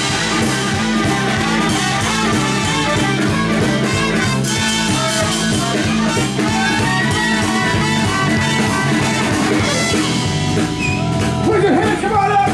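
A blues band playing an instrumental passage with no vocals: trumpet and saxophone with electric guitar over a steady drum-kit beat.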